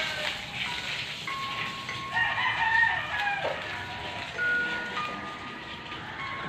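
A rooster crowing, loudest about two to three seconds in, over a steady hiss of water spraying from a garden hose onto a concrete-block wall.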